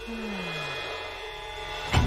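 Film trailer sound design: a low tone slides downward during the first second, under faint, sustained high ringing tones.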